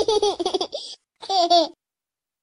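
A young child's voice laughing in two bursts, the second starting a little over a second in and stopping short.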